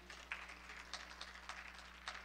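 Faint footsteps and light irregular taps, a few a second, over a steady low hum.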